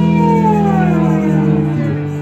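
Live rock band in an instrumental passage: an electric guitar holds a long note that slides slowly down in pitch over a sustained chord, fading toward the end.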